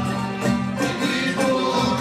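Live ensemble of plucked lutes and violin playing Algerian music, with quick repeated plucked notes over a steady accompaniment.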